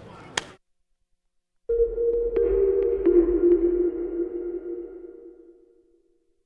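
Electronic logo sting for an end card: a sustained synthesized tone starts suddenly, with a deep low rumble under it and a few light ticks. Its lower note grows stronger, and it fades out over about four seconds.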